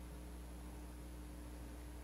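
Faint room tone: a steady low hum with a thin steady tone and an even hiss underneath.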